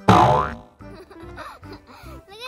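A cartoon "boing" spring sound effect, sudden and loud at the start with a wobbling, gliding pitch, dying away within about half a second, over light children's background music.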